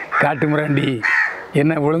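A man speaking in Tamil, in a somewhat rough voice, with short pauses between phrases.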